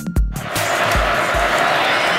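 Electronic intro music with heavy bass-drum hits. About a quarter of the way in it gives way to the steady noise of a large stadium crowd, with a couple of last low booms fading under it.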